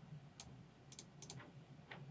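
A handful of faint, sharp computer mouse clicks over near silence, some in quick pairs.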